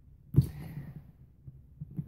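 A single dull thump against the bathroom countertop about half a second in, loud and close, followed by faint rummaging clicks near the end.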